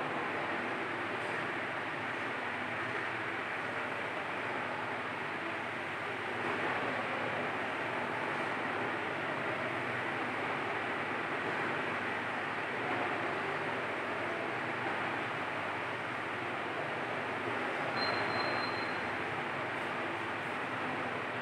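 Steady rushing background noise with no pauses, and a brief faint high tone near the end.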